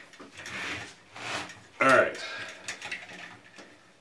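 Hands handling wires and a pair of wire cutters inside a sheet-metal fluorescent light fixture: short rustles early on, then a few light metallic clicks, with a brief spoken "All right" about two seconds in.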